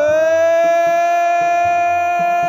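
A man's voice singing a qasida holds one long, high note at a steady pitch, having slid up into it. Faint drum strokes sound underneath.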